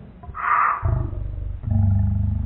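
A boy making mouth noises in imitation of drums and cymbals: a short hissing 'tss' about a third of a second in, then a low buzzing vocal noise with a rapid rattle in it that gets louder near the end.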